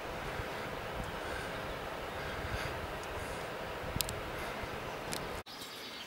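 The Schwarzwasser river rushing below, a steady noise. It cuts off suddenly about five and a half seconds in.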